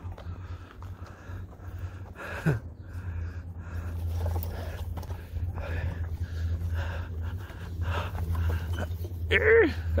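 Heavy breathing close to the microphone over a steady low rumble, with faint children's voices in the background and a short falling squeal about two seconds in. Near the end a child calls out a sing-song "Hello!"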